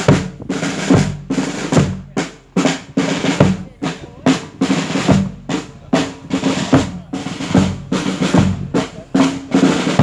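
Marching snare and bass drums playing a slow funeral-march beat, a heavy stroke a little less than once a second with lighter strokes between.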